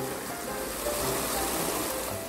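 Stream water pouring over a small rock cascade, a steady rushing splash, with soft background music underneath.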